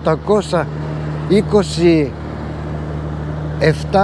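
Steady low engine hum with traffic noise, heard on its own for about a second and a half in the middle between stretches of a man's speech.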